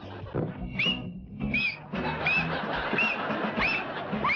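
Guinea pigs squeaking: a run of short rising-and-falling squeaks, one roughly every 0.7 seconds, over background music.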